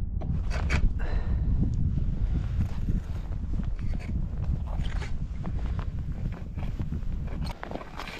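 Wind buffeting the microphone as a steady low rumble, with scattered small clicks and knocks of fishing gear being handled in a kayak.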